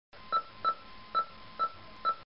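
Short electronic beeps like telephone keypad tones: four quick beeps at uneven intervals over a faint steady tone.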